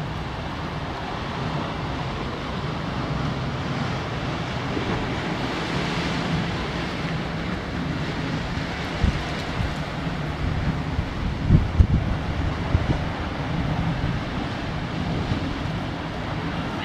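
Ocean surf washing over shoreline rocks, under steady wind noise on the microphone, which buffets hard a few times a little past halfway.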